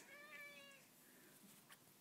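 A faint, short meow from a domestic cat, lasting under a second near the start.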